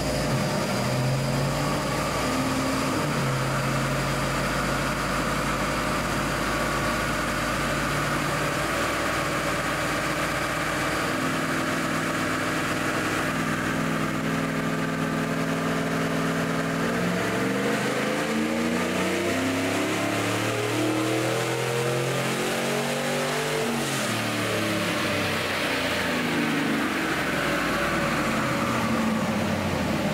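A 6.0-litre L98 V8 with a 6L80 six-speed automatic, fitted in a Toyota 80 series Land Cruiser, running through a power run on a chassis dyno. The engine note steps up in stages for the first half, then rises steadily to a peak about 24 seconds in and winds back down near the end.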